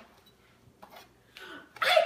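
Near silence with two faint, brief sounds, then a woman's loud exclamation, '¡Ay!', right at the end.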